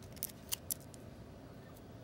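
Clear plastic card sleeve crackling as a ticket card in it is handled and turned over: a few sharp clicks in the first second, the loudest about half a second in, and one faint click near the end.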